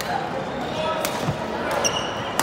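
Badminton rally on a wooden gym court: a sharp crack of a racket striking the shuttlecock about a second in, then a short high-pitched squeak of a sneaker on the floor near the end, over steady hall chatter.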